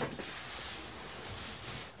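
A gift bag rustling as a cardboard box is pulled out of it, a steady hiss-like crinkle that fades near the end.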